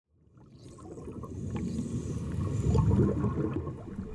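Underwater bubbling and rushing water, a low grainy rumble that swells up from silence and is loudest about three seconds in.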